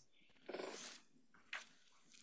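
Near silence in a pause between sentences, with one faint, short intake of breath about half a second in.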